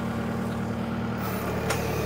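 New Holland skid steer's diesel engine idling steadily, with a sharp metallic click near the end.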